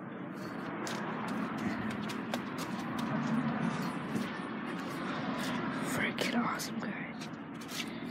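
Hushed, whispered talking close to a phone's microphone, with many small clicks and rubbing from the phone being handled.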